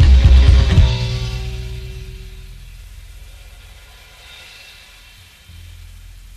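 A rock band with upright bass, electric guitar and drums plays loud for about the first second, then stops on a final chord that rings out and slowly fades. A low hum is left underneath, a little louder near the end.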